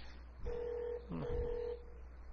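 Two steady electronic beeps on one mid-pitched tone, each about half a second long, with a short gap between them.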